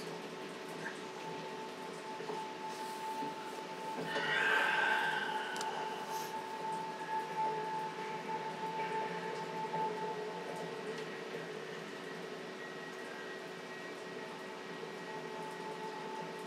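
Audio of the TV episode being watched, played low: a steady, held drone of a few sustained tones over faint background noise, with a brief louder, higher swell about four seconds in.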